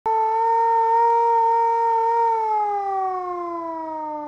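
A siren sounding one steady pitch, then sliding slowly down in pitch from a little past two seconds in as it winds down.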